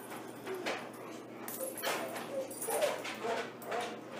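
Steel links of a Herm Sprenger prong collar clicking and clinking together in the hands as a link is taken out to shorten it. A dog whimpers faintly a few times in the second half.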